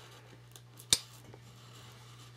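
A single sharp click a little under a second in, from VHS tape cases being handled, over a faint steady low hum.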